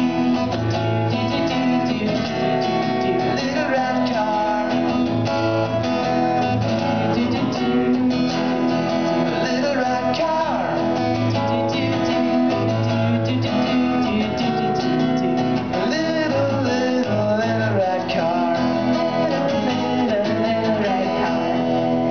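Acoustic guitar strummed live, with a voice singing a melody over it without words.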